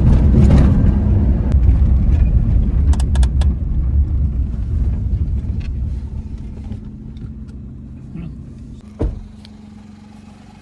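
Car engine and tyre rumble heard from inside the cabin, fading as the car slows down and settles to a low steady idle hum. There are a few clicks about three seconds in and a single thump near the end.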